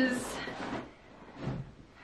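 Fabric rustling as a canvas backpack is handled and pulled open, followed by a short soft bump about one and a half seconds in.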